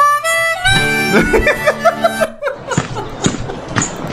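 A harmonica played in a quick run of stepping notes for about two seconds, then breaking into rougher, choppier blows.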